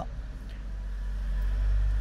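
A low rumble that swells steadily through the pause, loudest near the end, under a faint hiss.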